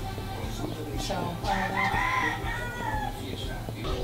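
A rooster crowing once: a single drawn-out call starting about a second and a half in, over a steady low hum.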